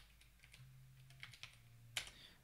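Faint keystrokes on a computer keyboard as a short numeric one-time passcode is typed: a few quick light taps, then a sharper key click at the end.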